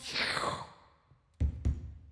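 Live beatboxing into a microphone: a breathy sweep that falls from high to low and dies away, then after a short pause two deep kick-drum thumps about a third of a second apart, starting a beat.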